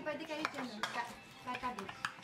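Knife and fork clicking and scraping against a plate as a crispy-skinned roast pork belly (lechon belly) is carved, with voices chatting in the background.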